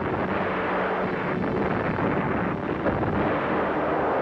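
Naval battle sound effects: a steady, heavy rumble with a few dull blasts of gunfire and shell explosions, the sharpest nearly three seconds in.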